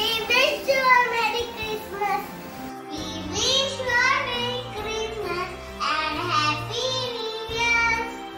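A young child singing over a music backing track; just before three seconds in the recording changes, and a child's voice goes on singing over a backing with a steadier low bass.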